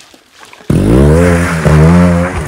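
Trials motorcycle revving hard as it climbs a muddy bank. The engine cuts in suddenly about two-thirds of a second in, with its pitch dipping briefly and rising again.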